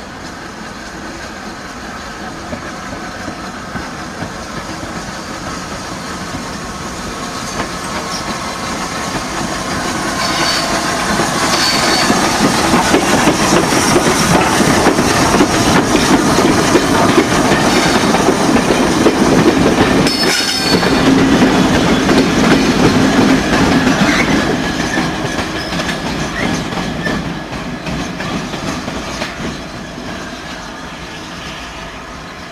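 Merchant Navy class steam locomotive 35028 Clan Line and its coaches rolling slowly past over curved pointwork, wheels clicking over the rail joints, with a few brief high-pitched wheel squeals. The sound builds, is loudest as the engine passes, and fades away.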